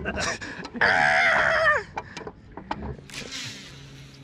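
A man laughing for about a second, the laugh falling away at its end. A short hiss follows near the end, over a faint low steady hum.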